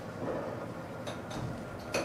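Steady hum inside a lift car, with a few sharp clicks about a second in and a louder click near the end as the stainless steel doors start to slide open.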